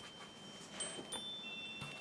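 Faint, high ringing tones, several notes starting one after another and held, with a few soft ticks over quiet room tone.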